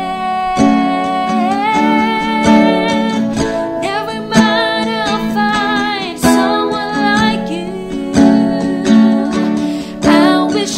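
A woman singing long held notes that waver and slide in pitch, over plucked acoustic guitar.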